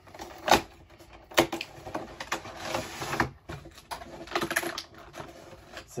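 A few sharp clicks and taps from handling a cardboard-and-plastic Pokémon collection box, with a brief rustle near the middle.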